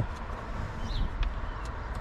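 Outdoor background noise with a steady low rumble, a few faint clicks and one short faint chirp about a second in.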